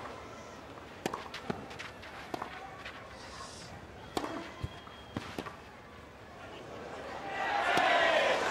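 Tennis rally on clay: a run of sharp pops from racket strings striking the ball and the ball bouncing, coming every half second to a second. Crowd noise swells near the end.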